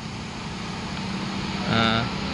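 Steady low hum with a hiss, slowly growing louder, typical of a vehicle engine running. A voice sounds briefly near the end.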